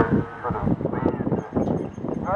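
Indistinct talking between a short pause in the interview, with a faint, thin, high steady tone that starts a little over halfway in.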